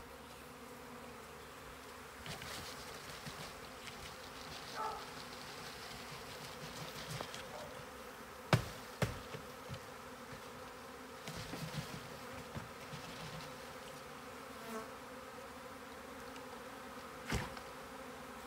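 Honeybee swarm buzzing as a steady drone. Two sharp thumps about halfway through and another near the end come from the cardboard box being jolted to shake the swarm down into the hive box.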